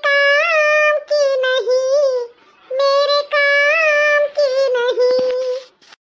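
High-pitched, sped-up cartoon woman's voice singing long, drawn-out wavering notes of a sad song in two phrases, with a short breath-like gap between them.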